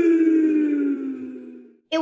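A long drawn-out human cry, held as one note whose pitch slides steadily down as it fades, then stops just before the end.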